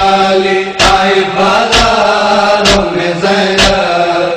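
Noha recitation: a voice chanting an Urdu lament on long held notes, over a regular thud about once a second.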